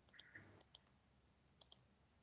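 Near silence with a few faint computer-mouse clicks, in two small groups, as a pen colour is picked in an on-screen whiteboard.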